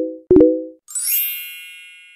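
Sound effects for an animated subscribe button: two short identical dings as the subscribe and like buttons are clicked, then about a second in a bright, high shimmering chime that slowly fades.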